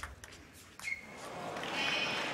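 A few sharp clicks of a table tennis ball in the first second, then arena crowd noise swelling from about a second in and loudest near the end as a rally gets under way.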